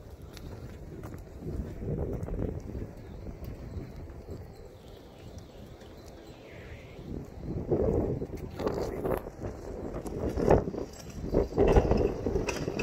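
A person's footsteps while walking outdoors, with rumbling from the handheld phone being moved; the knocks grow louder over the last few seconds.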